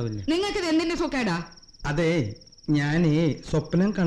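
Voices in dialogue, with a steady, high-pitched cricket trill running unbroken underneath as night ambience.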